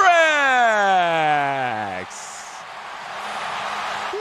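A man's long held shout whose pitch falls steadily for about two seconds, then cuts off, leaving the arena crowd cheering for the game-winning basket.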